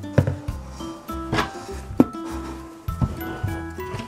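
Instrumental background music with held notes that change every half second or so, and a few sharp clicks over it.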